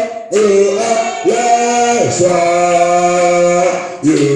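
Voices singing slowly in a church service, holding long sustained notes in phrases of about a second, with short breaks between them.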